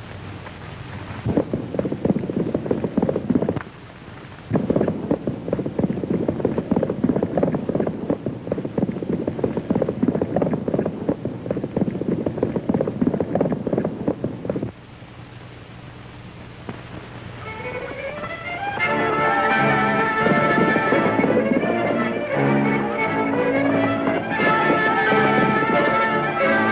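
Horses galloping, a dense drumming of hoofbeats with a short break about 4 seconds in, which stops about 15 seconds in. Film-score music comes up about 18 seconds in.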